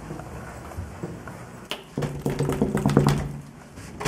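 Knuckles knocking on a hotel room door, a few quick raps about two seconds in, while a muffled voice holds a steady note over them.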